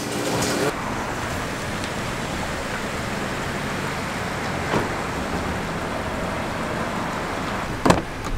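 A kitchen sink tap running for a moment, then steady outdoor traffic noise, with a faint tick about halfway and a car door clunk just before the end.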